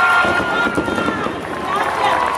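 Concert crowd cheering and shouting after a song ends, with one long high-pitched cry held until a little past a second in.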